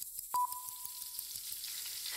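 Faint rapid clicking and clattering of a split-flap display board flipping its letters. A short ding sounds about a third of a second in and fades over about a second.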